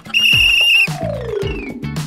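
A toy police whistle blown in one long, steady, shrill blast lasting about a second. It is followed by a falling, sliding tone over background music.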